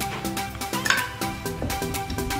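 Background music with a steady beat, with a single metallic clink about a second in.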